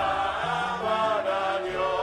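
Slow choral chant: several voices holding long notes that move in steps from one pitch to the next.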